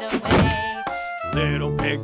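A thump sound effect near the start, followed by the bright backing music of a children's nursery song, with a sung line coming in a little past halfway.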